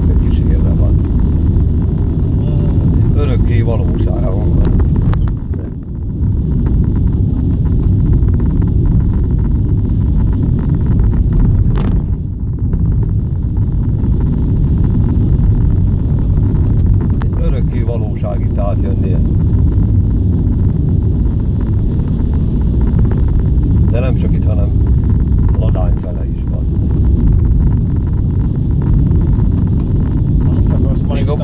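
Car on the move heard from inside the cabin: a loud, steady low rumble of engine and tyres on the road, dipping briefly about six seconds in and again near the end.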